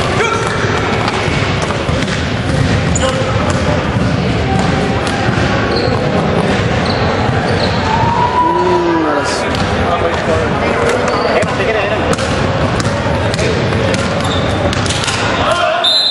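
A basketball bouncing on a hardwood gym floor during play, with scattered knocks throughout, over a steady din of indistinct voices.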